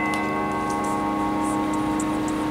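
Electric guitar chord left ringing, sustaining steadily at an even level.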